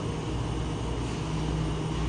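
A steady low mechanical hum with an even hiss over it, running without change.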